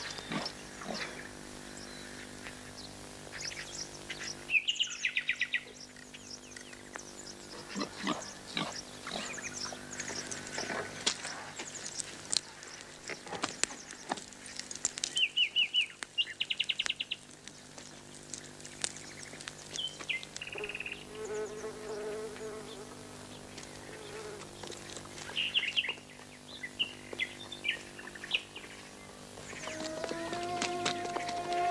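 Insects chirping in short, rapidly pulsed bursts, three separate spells about a few seconds in, in the middle and near the end, over scattered small clicks and a steady low hum.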